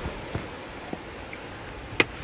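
Footsteps and rustling of someone climbing over weathered driftwood planks strewn with dry leaves: a few soft knocks, then a sharp knock near the end.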